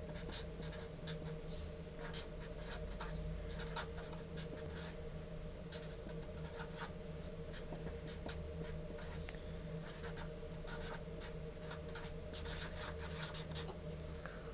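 Sharpie marker writing on lined paper: a run of short pen strokes, busiest near the end, over a steady low hum.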